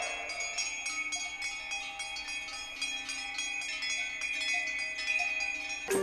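Quiet, bell-like chiming tones that hang on, sprinkled with light, quick ticks several times a second, from the pre-recorded electronic part of a piece for pipa and tape.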